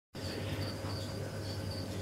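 Faint insect trilling, a thin high tone that comes and goes, over a low steady hum.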